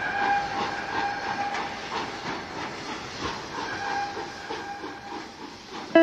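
Steam train running, its wheels beating a regular clickety-clack over the rail joints. A steady whistle tone is held for about a second and a half at the start and again about four seconds in. The sound fades away near the end.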